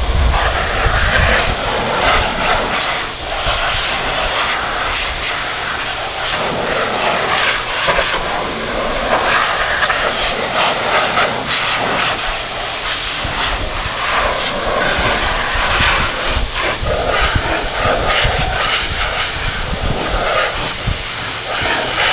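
Flying Pig high-velocity dog-grooming dryer blowing hot air through its hose onto a wet motorcycle: a steady, loud rush of air whose tone shifts as the nozzle is moved over the bike.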